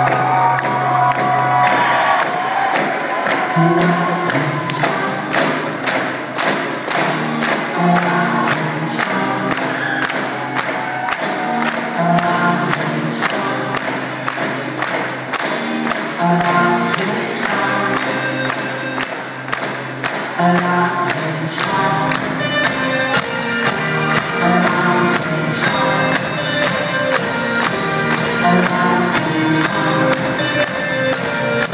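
Live band playing a song, heard from the audience in a theatre: a drum kit keeps a steady beat of about two hits a second under guitars, keyboard and sung vocals.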